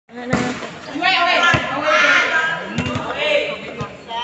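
Volleyball players shouting and calling out during a rally, with sharp slaps of the ball being hit and striking the concrete court, two of them clearest near the start.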